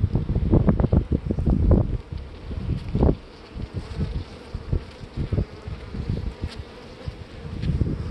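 Honey bees buzzing over the open top box of a hive, a steady hum. Low buffeting on the microphone in the first two seconds.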